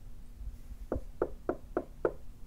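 Knuckles knocking on a panelled interior door: four even knocks, about four a second, starting about a second in.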